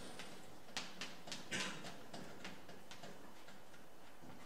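Chalk on a blackboard as characters are written: a series of short taps and brief scratches, busiest between about one and two and a half seconds in.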